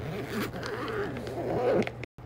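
A zipper on a fabric bag being pulled open in one continuous draw, growing a little louder before it stops near the end.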